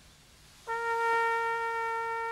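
Brass band instruments come in about two-thirds of a second in and hold a single steady note, unchanging in pitch.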